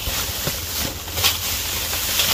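Thin plastic bags rustling and crinkling as gloved hands rummage through them in a cardboard box, with a few light knocks.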